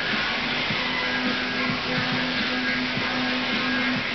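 Indoor rowing machines' fan flywheels whirring steadily as several rowers pull strokes, under a steady hum.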